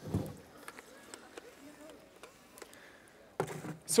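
Mostly quiet stage with a few faint clicks, and a sharp intake of breath into a headset microphone near the end.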